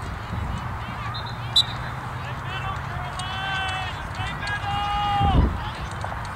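Distant high-pitched shouts and calls from young players and spectators across the field, with one long held call near the end that drops off sharply. A single sharp knock about one and a half seconds in.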